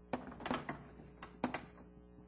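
Writing on a lecture board: a few sharp taps and short strokes of the chalk or marker, about four in two seconds.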